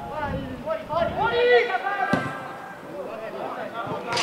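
Football players calling and shouting to each other during play, with a single sharp knock about two seconds in.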